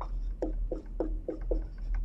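Dry-erase marker squeaking across a whiteboard as letters are written: a quick run of short strokes, about three or four a second.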